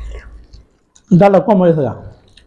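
Close-up eating sounds: chewing and rice being worked by hand. About a second in comes a short, loud voiced sound from one of the eaters, falling in pitch, which is the loudest thing here.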